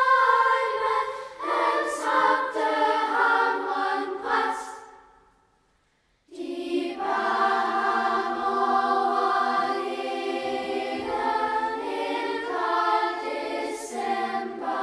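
A children's choir singing in harmony. The voices fade away into about a second of silence near the middle, then come back in together with long held chords.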